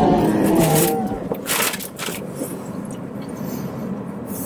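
A man biting into a bacon burger and chewing with his mouth full, with a hummed "mmm" in the first second. A few short crackling noises follow as he chews, the clearest about a second and a half in.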